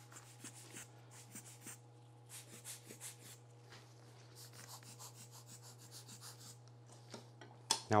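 A rubber hand air blower squeezed over and over, giving faint short puffs of air that push wet alcohol ink across the linen. A steady low hum runs underneath.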